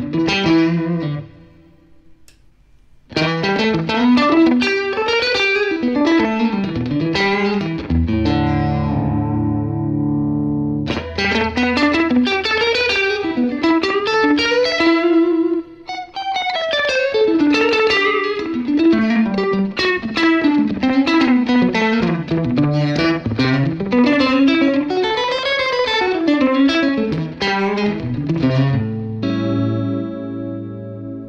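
Electric guitar played through a Wampler Faux Tape Echo delay pedal, set to a short echo time with one or two repeats and its Faux Tape Reel modulation on, giving a chorused echo that blends with the dry note. Fast runs of notes are broken by a brief pause about a second in and by a held chord about a third of the way through.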